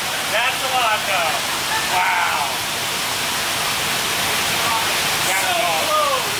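Steady rushing noise of large shop fans moving air, with short snatches of voices talking a few times over it.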